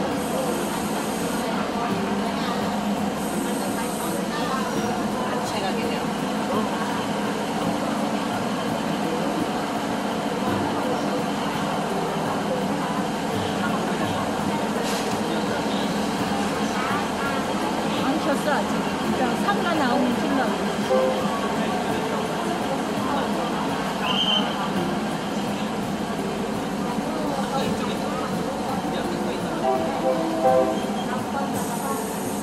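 Train rolling slowly out of a station, heard from inside the carriage at an open door: a steady running rumble of engine and wheels on rail. People's voices run underneath, busiest in the middle.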